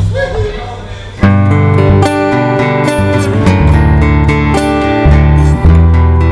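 Acoustic guitar and upright bass start the song together about a second in, after a brief quieter lull. They settle into a steady strummed instrumental intro with sustained low bass notes under the guitar.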